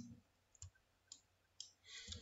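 Near silence with three faint short clicks about half a second apart.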